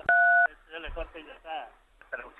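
A single telephone keypad tone, two notes sounding together for under half a second, as a number is dialled for another call. Faint laughter follows.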